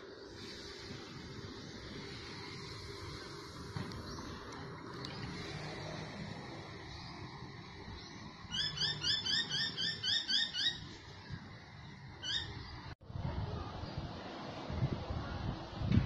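A bird calls a quick run of about ten sharp chirps, about four a second, past the middle, then gives one more chirp shortly after, over a steady outdoor hiss. Near the end the sound cuts to wind buffeting the microphone.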